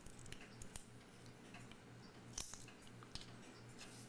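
Faint small clicks and taps of a clock's mainspring barrel being handled as its cover is off and its arbor taken out, the sharpest click about two and a half seconds in. A steady low hum runs underneath.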